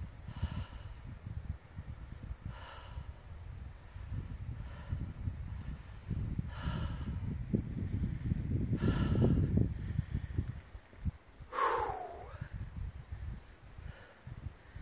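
A hiker breathing hard after a steep climb, one loud breath about every two seconds, over a low steady rumble on the microphone. Near the end comes a single voiced sigh that falls in pitch.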